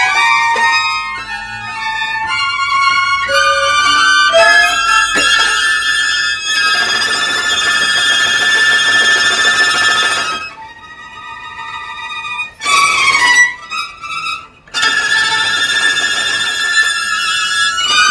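A string quartet playing contemporary music, the violins prominent: quick shifting high notes at first, then long held high notes. About ten seconds in it drops to a quieter stretch broken by a few short loud jabs, then held notes resume.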